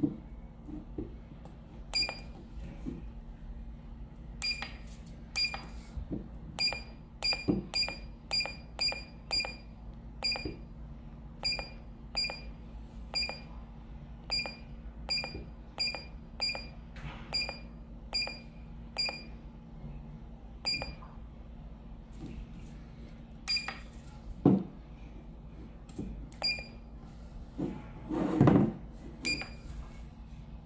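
Short electronic key-press beeps from a digital readout's buzzer as its keypad buttons are pressed one after another, about one every half second to a second, some two dozen in all. Near the end come a couple of dull thumps.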